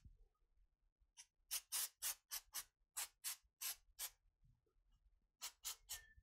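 Aerosol can of spray-on hair colour giving about a dozen short sprays, each a brief hiss, with a pause of about a second after the first run before three more near the end.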